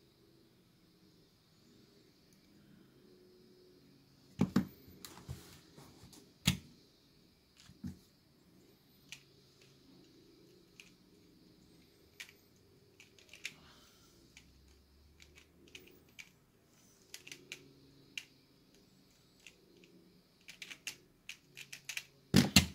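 Plastic Pyraminx puzzle being turned by hand: irregular light clicks and clacks of its layers and tips, starting about four seconds in, with a few louder knocks early on and quick runs of clicks near the end.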